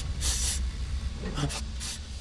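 A cartoon character sniffing the air in three short, hissy breaths over a steady low rumble, taking in a burning smell he mistakes for fresh-baked cookies.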